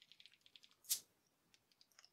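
A crown cap being prised off a bottle of alcohol-free lager with a bottle opener: a few faint metal clicks, then one short sharp pop of the cap coming off about a second in. The beer does not gush or foam over.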